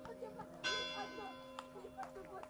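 A bell tolling slowly, about one stroke every two seconds, each stroke ringing and then fading. Voices call out faintly across the field.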